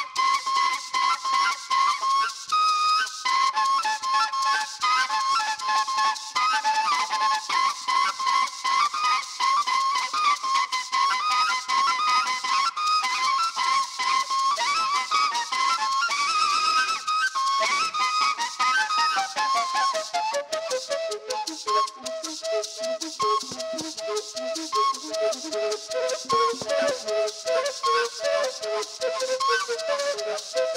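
Traditional Colombian gaita music: cane duct flutes (gaitas) play a reedy, ornamented melody over a steadily shaken maraca. About two-thirds of the way through, the melody drops to a lower register.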